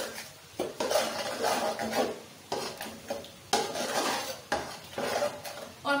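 A slotted metal spoon scraping and stirring a wet masala of tomatoes and spices in oil around a metal cooking pot, in repeated strokes about a second apart.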